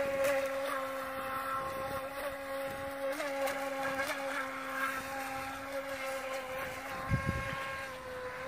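Brushless electric motor of a Feilun FT012 RC racing boat running under power, a steady high whine that wavers slightly as the boat turns in tight circles on the water. There is a brief low thump near the end.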